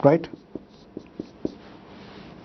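Marker writing on a whiteboard: several short taps and strokes of the tip on the board in quick succession.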